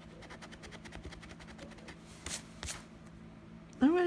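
A gold coin scratching the coating off a paper scratch-off lottery ticket: a quick run of short scrapes, then two louder strokes a little after halfway. A woman's voice starts just before the end.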